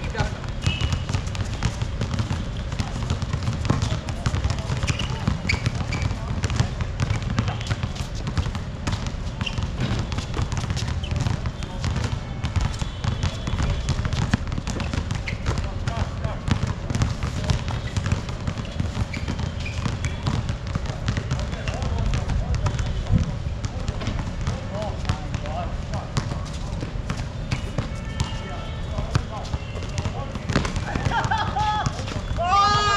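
Half-court basketball game on a hard outdoor court: a basketball dribbled and bouncing, with players' footsteps and occasional shouts, over a steady low rumble.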